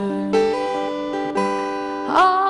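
Acoustic guitar strumming chords that ring on, with a fresh strum about a third of a second in and another about a second later.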